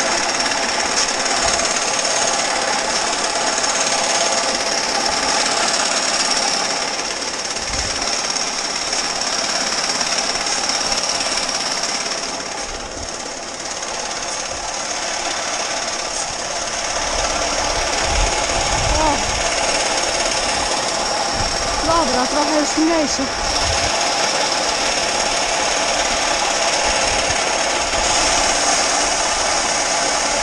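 Grain conveyor running with a steady mechanical rattle while grain pours from its spout into a trailer.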